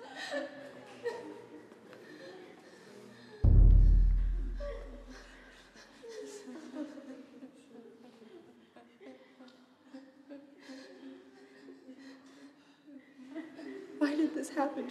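Film soundtrack with indistinct voices and light laughter under music, broken about three and a half seconds in by one sudden, deep boom that dies away over about two seconds.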